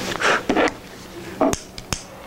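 Two sharp clicks or knocks, about half a second apart in the second half, as lab equipment is handled on a bench, with brief voices at the start.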